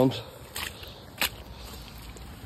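Footsteps on a muddy track: a soft step about half a second in and a sharper click about a second in, over a faint outdoor background.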